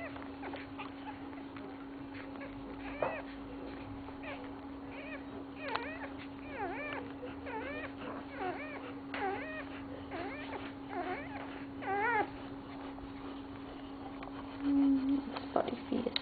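Newborn Dalmatian puppies squeaking while suckling: a string of short, high, arching cries from about three seconds in until about twelve seconds, over a steady low hum.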